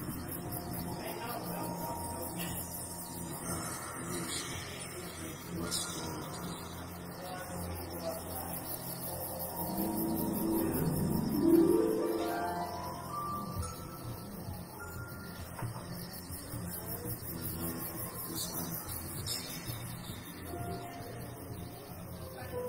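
Live ambient psychedelic music: sustained drone tones and held notes, with one pitch sweeping steadily upward about ten seconds in, the loudest moment.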